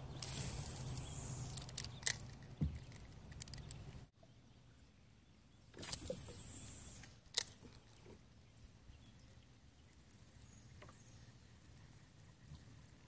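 Two casts with a spinning rod and reel, about six seconds apart. Each is a hiss of line whizzing off the spool that falls in pitch over about a second, then a sharp click as the bail is snapped shut.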